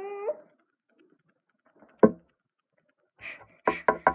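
A child's high, drawn-out wail in the voice of the sinking toy pet, ending about a third of a second in. About two seconds in comes a single sharp knock, the loudest sound, and near the end a few clicks and rustles as plastic toy figures are handled.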